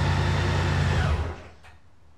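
A 2023 Honda Goldwing's flat-six engine idling steadily, then switched off a little over a second in. The sound cuts out, leaving faint room tone and a light click.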